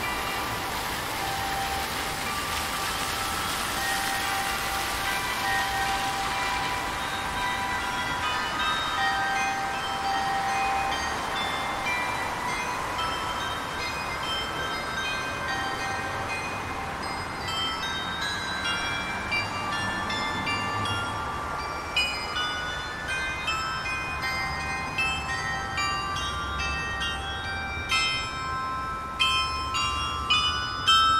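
The bell glockenspiel of the 4711 house in Cologne playing a melody, its ringing notes getting clearer and more frequent from about halfway through. A rush of street traffic noise lies under the first few seconds.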